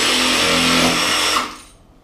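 DeWalt 20V Max cordless jigsaw running at speed as it cuts into the edge of a thin wood sheet. It is steady, then stops about a second and a half in and winds down quickly.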